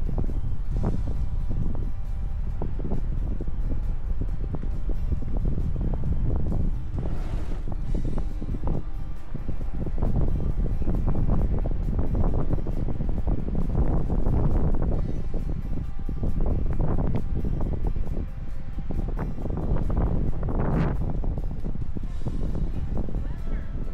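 Wind buffeting the microphone, a heavy gusty rumble, with background music under it.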